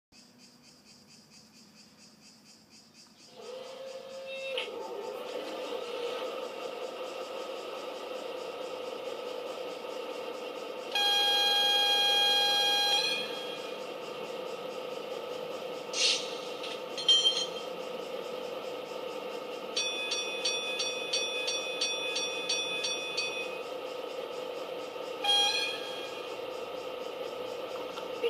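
Sound module of a garden-scale model diesel locomotive: after a few seconds of near silence the engine sound starts and idles steadily. A loud horn blast is held for about two seconds, followed later by a rapid ringing signal for a few seconds and a short second horn toot near the end.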